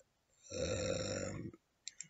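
A man's drawn-out, creaky hesitation sound (an 'ehh') between phrases. It starts about half a second in and lasts about a second.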